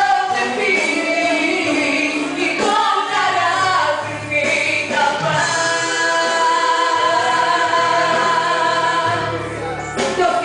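Woman singing a gospel song into a microphone over instrumental backing with bass notes, holding one long steady note from about five to nine seconds in.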